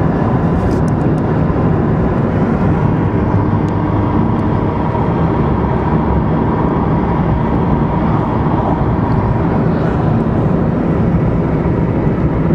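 Steady road and engine noise heard inside a moving car, a constant low rumble that doesn't change.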